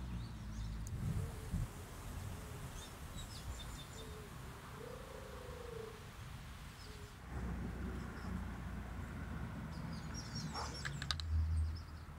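Faint outdoor ambience of birds chirping, with short high calls scattered through it and more near the end, over a low steady rumble that fades out for a few seconds.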